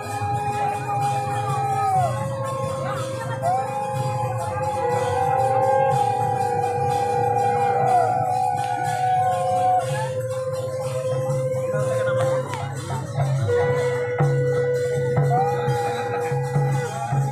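Live Harinam kirtan music: several long held tones that bend in pitch at their starts and ends, over a steady drum beat with jingling cymbals.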